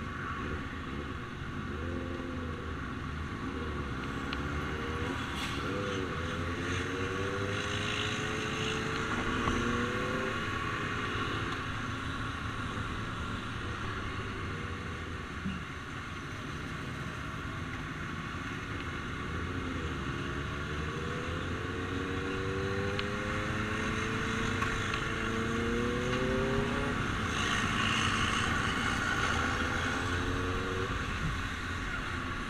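Motorcycle engine heard from on the bike while riding, its pitch rising again and again as it accelerates, over a steady rush of wind and road noise.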